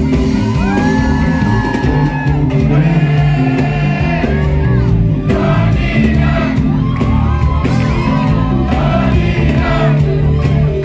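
Live concert music: a singer performs over the band's music, with sustained sung lines over a steady bass. The audience cheers and shouts along.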